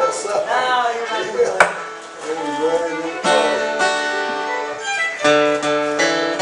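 A sharp knock about a second and a half in, then, about halfway through, an acoustic guitar begins strumming chords, with other string instruments sounding along.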